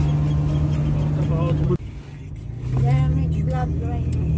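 Steady drone of a moving car, with a voice or singing faintly over it; the sound drops out abruptly a little under halfway through and comes back about a second later.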